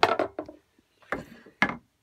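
Wooden knocks as a length of timber is set down on a wooden bench hook: a quick cluster of knocks at the start, then two more single knocks about a second and a second and a half in.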